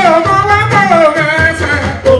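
A man singing live into a microphone, holding long, wavering, ornamented notes over a live band with drums and bass guitar.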